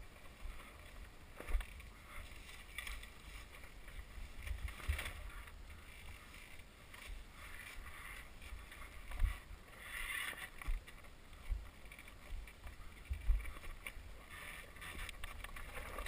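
Muffled low rumble of wind and jostling on a dirt bike's onboard camera as the bike rolls down a rough rocky trail, with irregular thumps as it jolts over stones, the loudest about nine and thirteen seconds in.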